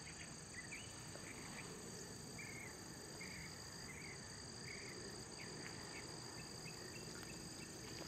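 Faint evening insect chorus: crickets give a steady, high, continuous trill, with short lower chirps repeating about twice a second.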